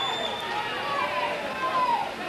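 Football ground ambience: indistinct distant voices of the crowd and players calling, over a steady background noise.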